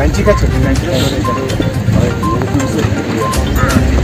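People's voices over music, with a short high beep repeating about once a second.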